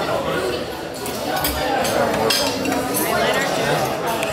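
Busy restaurant dining room: background chatter of other diners mixed with the clink of dishes and cutlery.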